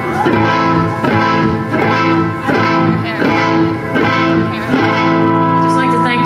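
Electric guitar, a Gibson Les Paul Junior through a Vox AC15 amplifier, strumming chords about once every three-quarters of a second, each chord ringing on into the next: the intro of a live song.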